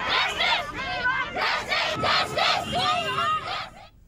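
Crowd of nurses chanting protest slogans together, loud and rhythmic, cutting off suddenly just before the end.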